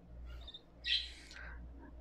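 Budgerigar chicks cheeping faintly: a few short high chirps, then one louder, raspy call about a second in.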